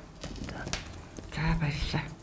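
A pause in speech with a few sharp clicks and knocks from a small clip-on microphone being handled, and a brief spoken fragment just before the end.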